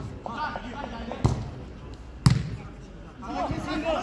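A football being kicked: sharp thuds, a light one at the start and two loud ones about a second apart, with players shouting in the background.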